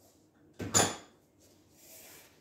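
A kitchen drawer sliding shut, one short noise just after half a second in.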